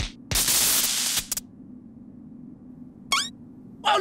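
Cartoon sound effect: a loud burst of hiss, about a second long, shortly after the start, over a steady low musical drone. A short high squeaky glide comes about three seconds in.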